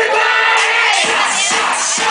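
Loud party dance music with a crowd shouting and cheering over it. The low drum beat drops out for about the first second, then comes back.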